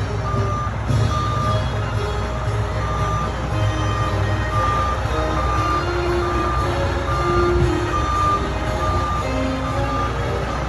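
Fire engine's motor rumbling at low speed while its backup alarm beeps steadily, a short high beep about every two-thirds of a second, as the truck is manoeuvred into place at the curb.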